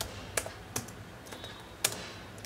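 Keys being typed on a Dell laptop keyboard: a handful of separate, unevenly spaced key clicks, the sharpest near the end.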